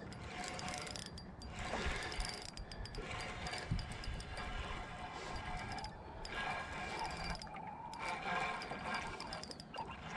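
Spinning reel being cranked to bring in a hooked fish against a bent rod, its gears giving a steady fine clicking that stops briefly a few times as the reeling pauses.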